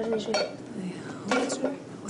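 Thin metal sheet clinking and rattling as hands press it down over a round bowl-shaped body, with a louder clatter about a second and a half in.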